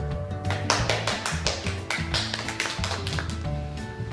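Audience clapping in a burst of applause over background music, starting about half a second in and dying away before the end.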